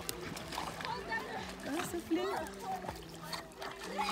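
Two dogs swimming close together, their paddling splashing and sloshing the lake water in irregular strokes, with short voice-like sounds over it, loudest about two seconds in.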